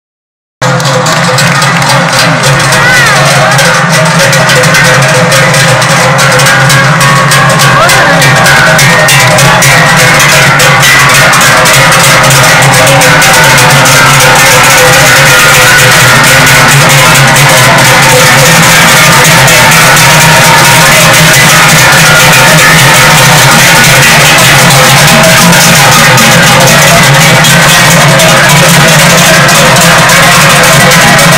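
Many large cowbells clanging and ringing together without a break, worn by the cows and swung by hand by the herders, in a loud dense din that starts just under a second in.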